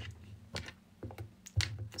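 Fingernails tapping on a phone's touchscreen while typing, about five sharp, irregular clicks over a low hum.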